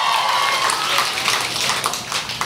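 Audience cheering and clapping, with one long held whoop that ends a little way in; the noise dies down toward the end.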